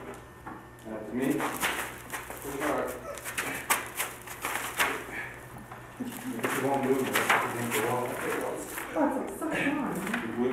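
Indistinct voices talking, too unclear to make out. In the first half there is a run of sharp clicks and rustles.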